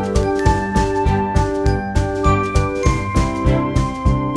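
Background music with a steady beat of about three to four strokes a second under a bright, chiming melody of held notes.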